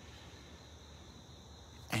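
A pause in speech: faint steady background noise with a low hum and a thin, steady high-pitched tone.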